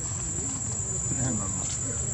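Insects droning outdoors, a single steady high-pitched tone that does not change, over a low rumble.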